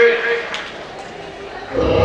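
The end of a man's call over the PA, then a quieter stretch of hall noise, then music with a heavy bass beat starting loudly through the hall speakers near the end.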